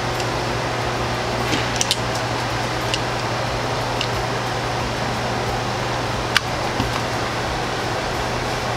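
Steady mechanical room hum, with a few light clicks of plastic 2x2 cube pieces being fitted together; the sharpest click comes a little after six seconds in.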